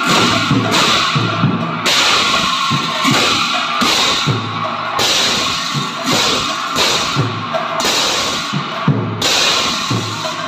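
Several pairs of large bell-metal bortal cymbals played together in a steady rhythm, giving a continuous loud metallic crashing and ringing. Low thumps fall regularly on the beat beneath it.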